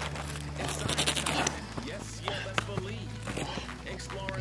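A man's wordless gasps and grunts of exhaustion over quiet background music.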